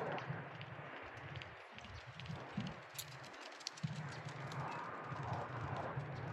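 Faint hoofbeats of racehorses moving on the dirt track, over a low, uneven outdoor rumble.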